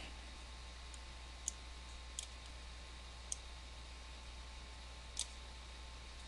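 Four faint computer mouse clicks at uneven intervals of one to two seconds, over a low steady hum.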